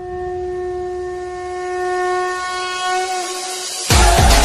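A single steady horn-like tone, held for about three seconds and fading away near the end, over a faint hiss.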